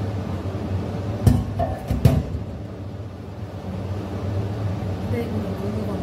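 Two sharp metal clanks about a second apart, from a steel pot lid being handled over a karahi on the stove, over a steady low hum.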